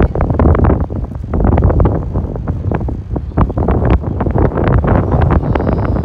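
Wind buffeting the microphone on a moving boat: a loud, gusty rumble with irregular pops.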